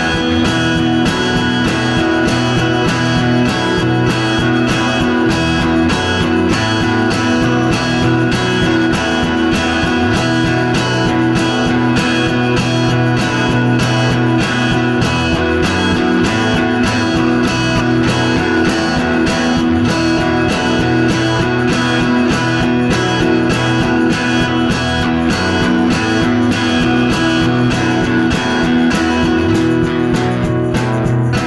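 Rock song in an instrumental passage: electric guitar over bass with a steady beat, with no singing.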